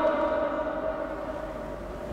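A pause in a man's amplified talk: his voice's echo fades out in the first half-second, leaving a faint steady single-pitched tone from the sound system.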